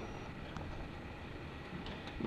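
Steady low rumble and hiss of background noise, typical of a handheld camera's microphone being moved and rubbed. There is no distinct event.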